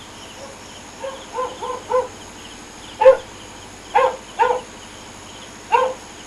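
A dog barking, a string of short barks starting about a second in, the loudest about three seconds in, over faint chirping of night insects.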